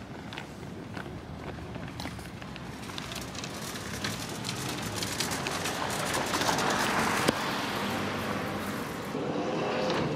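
Parking-lot traffic noise that swells to its loudest about six to seven seconds in, like a car passing close, with a single sharp click just after.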